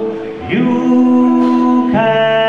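Two male voices singing a held note in harmony with acoustic guitar. The note comes in about half a second in after a short dip and is held to the end.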